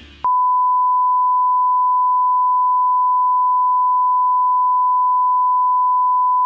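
A steady, unwavering single-pitch test tone, the reference tone that goes with television colour bars. It starts about a quarter second in, right after the music cuts off.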